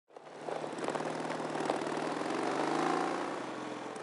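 Small motorcycle engine running, fading in from silence and rising in pitch through the second half as it speeds up.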